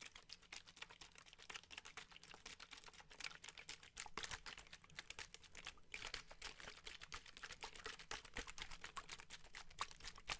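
Plastic water bottle shaken and handled right at the microphone: a dense run of quick, faint crackling clicks.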